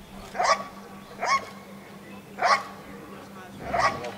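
A Malinois-type working dog barking four times in short, loud barks, spaced about a second apart, at a hidden decoy: the bark-and-hold at the blind in a protection exercise.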